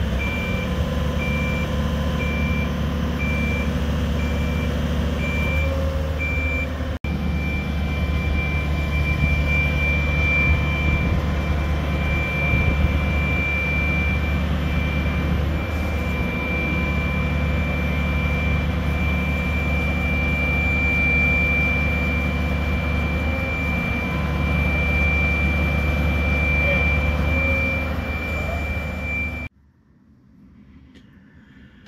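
Lorry-loader crane truck's diesel engine running to power the crane during a lift, with a high electronic warning beeper over it. The beeper sounds about twice a second for the first seven seconds, then, after a brief break, holds as one steady tone.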